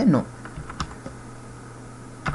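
Computer keyboard keys being typed: a handful of separate key clicks within the first second, over a steady low hum.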